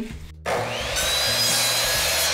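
Power miter saw cutting PVC pipe in half lengthwise. The saw starts suddenly about half a second in, its high whine rising in pitch and then holding steady with loud cutting noise.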